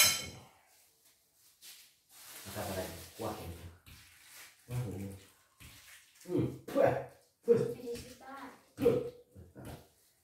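Speech: short spoken phrases and voice sounds from people in a small room, in several bursts, with a sharp click right at the start.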